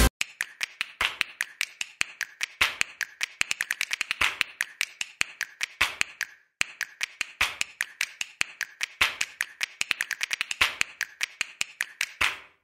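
Makeup sponge dabbing concealer onto the skin, making a rapid, irregular series of soft clicking taps in clusters, with a brief pause about halfway through.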